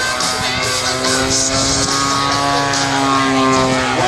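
Radio-controlled P-47 Thunderbolt model's propeller engine running overhead in a sustained drone whose pitch rises slightly and then falls, heard together with guitar-driven background music.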